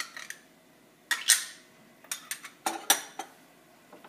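A metal utensil tapping and scraping against a stainless steel frying pan in several sharp, ringing clinks, as crushed garlic is knocked off into the pan.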